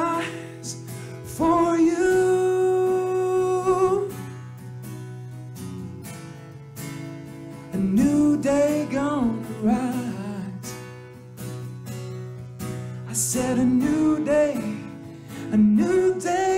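A man sings to his own strummed acoustic guitar, holding a long note early on and singing wavering phrases later. Between the vocal phrases there are quieter stretches of guitar alone.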